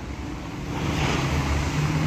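A car going by on the street, its engine hum and tyre noise growing louder through the second half.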